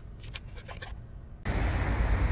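Quiet low rumble inside a parked car with a few faint clicks, then, about one and a half seconds in, a sudden jump to a louder low outdoor rumble.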